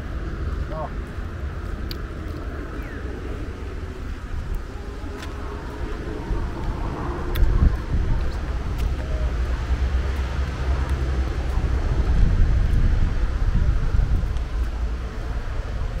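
Steady low rumble of wind buffeting the microphone while walking, with faint footsteps on stone steps.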